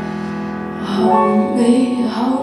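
A woman singing a slow ballad live over instrumental accompaniment. A held chord carries the first second, then her voice comes in with a new sung phrase about a second in.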